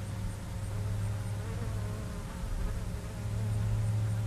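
A steady low buzzing hum, with faint wavering tones above it.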